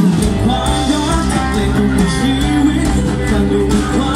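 Live band playing a pop song: a male voice sings into a microphone over guitar, bass and drums.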